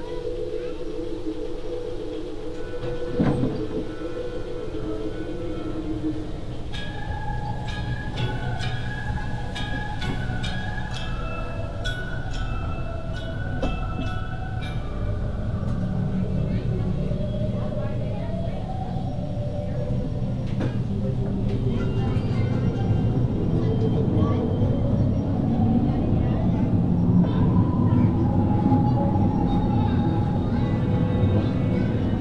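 Mine-ride train rumbling and clicking along its track, getting somewhat louder in the second half, with slow, drawn-out music from the ride's show playing over it.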